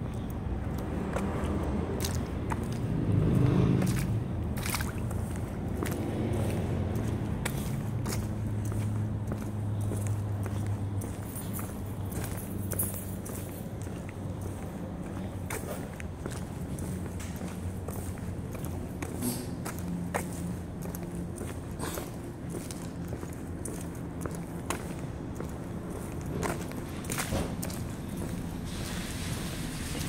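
Footsteps on pavement as someone walks, with irregular short scuffs and taps, over a steady low hum that is louder in the first ten seconds or so.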